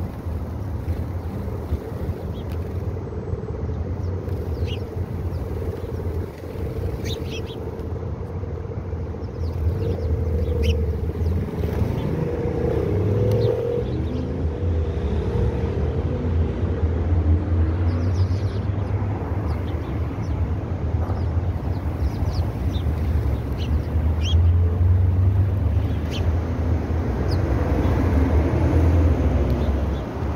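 A steady low rumble with scattered short, high bird chirps over it.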